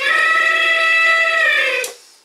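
Electronic elephant trumpeting call played through the small speaker of a talking elephant cookie jar, set off by lifting its lid: the toy's alarm for hands in the jar. One loud, steady call lasting just under two seconds, dipping a little in pitch as it ends.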